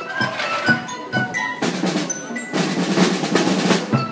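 Marching band playing: drum strikes under bright ringing pitched notes, then a snare drum roll from about one and a half seconds in that stops just before the end.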